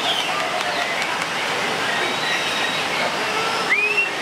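White-rumped shama giving thin, scattered whistles over a loud, steady hiss of rain. A clear, rising whistle near the end stands out.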